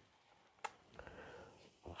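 Near silence: room tone between spoken phrases, with one faint short click about two-thirds of a second in and a few softer ticks after it.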